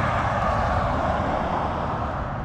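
Road traffic: a vehicle passing on the road, a steady rush of tyre and engine noise that eases off slightly.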